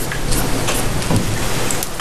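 Steady, fairly loud hiss of background noise with a few faint ticks in it.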